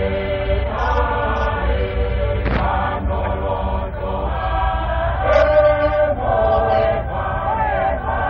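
Massed voices singing a Tongan lakalaka, with many singers holding chanted phrases together and shifting pitch every second or so over a steady low hum. The sound is dull, with the top end cut off as in an old recording.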